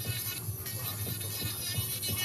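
Electric nail drill with a fine cuticle bit whining steadily while it blends the gel nail into the cuticle area, the pitch wavering slightly under load, with background music underneath.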